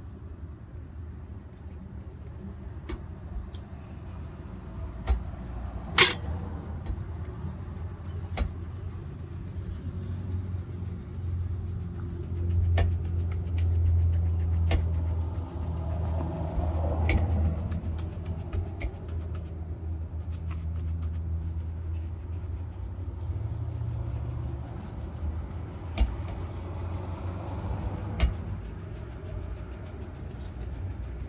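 Street traffic rumbling past, loudest about halfway through, under the rubbing and brushing of polish being worked into a brown leather shoe with a bristle brush. A few sharp clicks stand out, the loudest about six seconds in.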